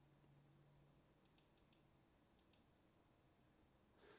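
Near silence: faint room tone with a faint low hum and a few faint, short clicks near the middle.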